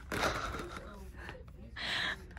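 Breathy, half-voiced laughter: one longer gasp of laughing breath about a second long, then a shorter one near the end.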